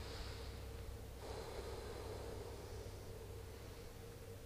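Quiet room tone with a steady electrical hum, and a soft rushing noise from about one to three seconds in.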